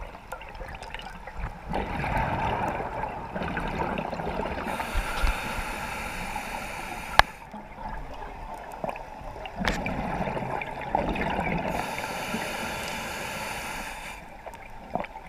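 Scuba diver breathing underwater through a regulator: two long gurgling bursts of exhaled bubbles, about two seconds in and again near ten seconds, with hissing inhalations between. A single sharp click comes about seven seconds in.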